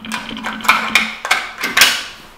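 Detachable magazine of a Lynx 94 straight-pull rifle being pushed up into the action: a handful of separate clicks and knocks, the loudest near the end as it goes home.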